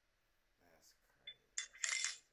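A drinking cup being handled and set down: a small click about a second in, then a quick cluster of sharp clattering clinks near the end.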